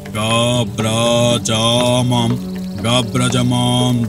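A man's voice chanting mantras in short held phrases, about five of them, over a steady low drone: the tantrik's ritual incantation.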